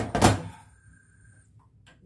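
A brief knock or scrape of a wooden spatula in a frying pan of stiff oat dough, about a quarter second in, then near silence.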